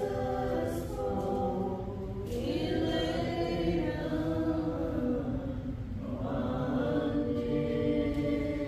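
Several voices singing a slow hymn together, holding long notes.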